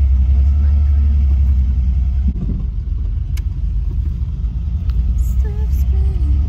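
Car in motion heard from inside the cabin: a loud, steady low rumble of engine and road noise, with a single sharp tick a little past the midpoint.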